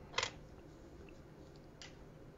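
Paper handled on a workbench as a sheet is swapped: a brief rustle about a quarter second in and a fainter one near the end, over quiet room tone.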